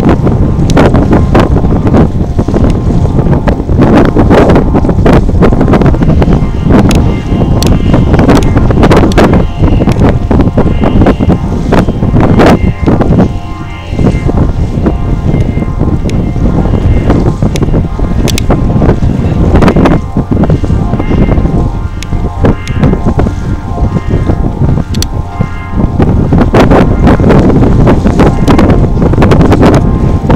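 Heavy wind buffeting on the microphone, loud and gusty throughout. Music is faintly audible beneath it through most of the middle stretch.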